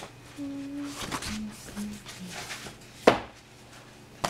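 A person humming short notes of a tune, with light clicks of objects being handled and one sharp knock about three seconds in.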